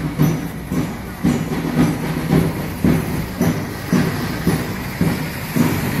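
Drums keeping marching time for a procession on foot, a steady beat about twice a second.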